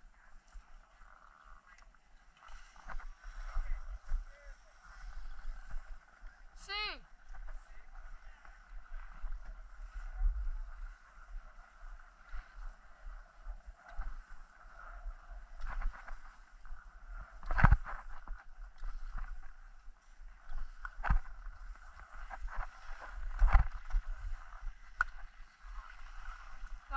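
Skis sliding and scraping over packed snow, with wind rumbling on the microphone. A brief, steeply falling squeal about a quarter of the way in, and a few sharp clacks in the second half.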